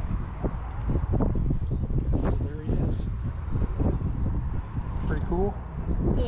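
Wind buffeting the microphone in a steady low rumble, with indistinct voices; a short high-pitched sound about two seconds in and again about three seconds in.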